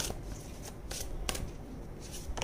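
Oracle cards being shuffled and handled by hand: a string of short papery flicks and rustles of card against card as one is drawn from the deck.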